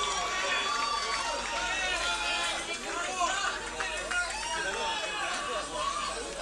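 Many voices talking and calling out over one another: a crowd chattering.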